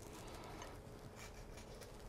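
Quiet room tone with a few faint ticks and rustles of hand handling.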